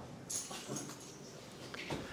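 A pause in a man's speech, filled with faint room sound and a faint short high-pitched sound about a third of a second in.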